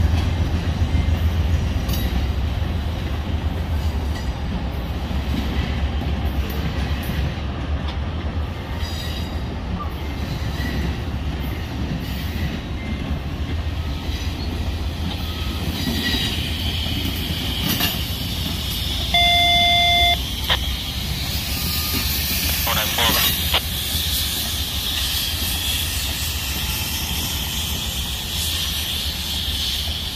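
Double-deck Amtrak Superliner passenger cars rolling slowly past on the rails, with a steady low rumble of wheels on track. A high-pitched squeal from the wheels builds in the second half.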